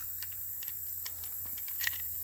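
Faint, scattered small clicks and ticks of handling noise, over a steady low background hum.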